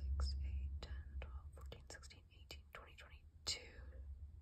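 A woman whispering under her breath, counting crochet stitches quietly to herself.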